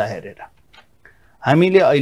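A man speaking, breaking off for about a second in the middle, where only a few faint small clicks are heard before he goes on.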